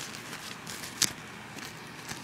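Faint rustling of a sanitary pad's wings and panty fabric being folded and handled, with one sharp click about halfway through.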